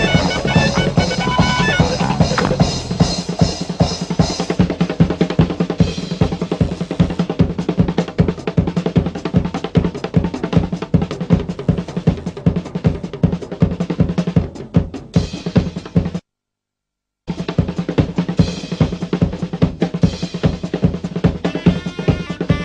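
A rock band's drummer playing a fast drum solo on a full kit: rapid snare and bass-drum strokes, rolls and cymbal wash, with the band's guitars dying away in the first couple of seconds. About three quarters of the way through, the sound cuts out completely for about a second, then the drumming resumes.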